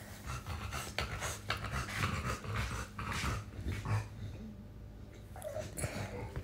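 An animal panting close to the microphone, in quick, irregular breaths.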